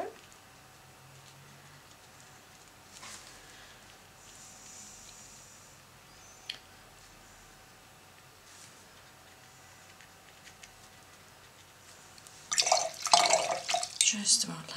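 Mostly quiet room tone with a few faint ticks, then near the end about a second and a half of loud clinking and splashing: a paintbrush being rinsed and tapped in a jar of water.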